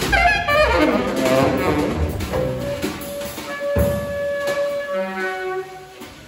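Tenor saxophone in free-improvised jazz, playing a fast falling run, then holding one long note and moving to a lower held note, with drums and bowed cello under it. There is one sharp drum hit partway through.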